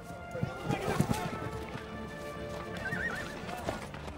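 Horses' hooves clip-clopping, with a horse neighing briefly about three seconds in, over the film's orchestral score.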